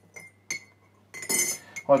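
Metal tea-infuser ball and its chain clinking against a mug: a few light clinks, one leaving a short ring, then a brief metallic rattle about a second in.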